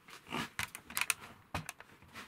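A few light clicks and rustles of handling as the camera is picked up and carried, with clothing brushing against it.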